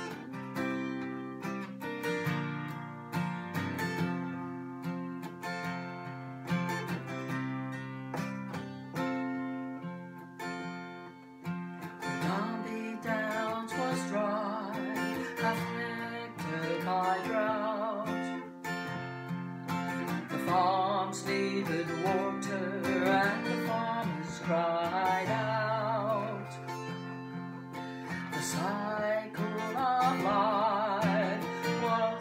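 Strummed acoustic guitar playing a country ballad's intro, with a woman's singing voice coming in about twelve seconds in and carrying on over the guitar.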